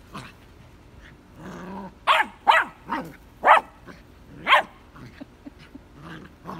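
Vizsla puppy giving a short low growl, then barking five times in sharp, high puppy barks over the next few seconds.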